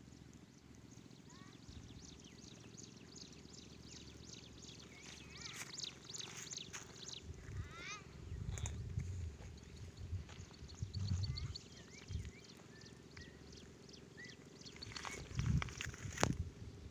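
Wild birds calling: many short high chirps and quick down-sweeping notes, busiest in the middle. There are a few louder low rumbles in the second half.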